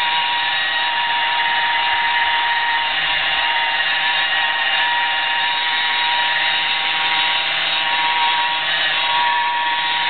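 Hand-held electric polisher with a foam pad running steadily while buffing a car door's paint: a constant whine that holds one pitch throughout.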